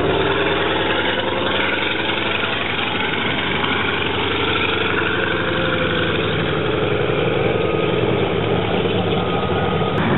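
Antonov An-2's nine-cylinder radial engine idling on the ground, its propeller turning, with a steady running note.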